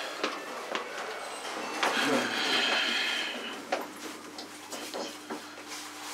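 Hotel passenger lift in motion, heard from inside the car: a steady running noise with a few clicks, a high whine for a second or two in the middle, and a low steady hum in the last couple of seconds.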